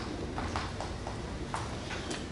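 Chalk writing on a blackboard: an irregular run of short taps and scratchy strokes as letters are written, the sharpest stroke about one and a half seconds in.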